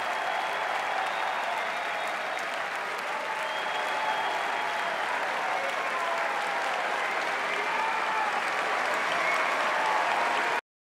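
A large tennis stadium crowd applauding and cheering steadily at the end of the match, with a few faint shouts or whistles above the clapping.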